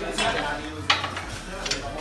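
Two sharp metallic clinks, about a second in and near the end, over a rustling hiss and faint background voices.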